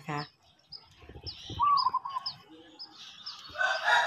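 Small birds chirping, short high chirps about twice a second, with a rooster starting to crow near the end.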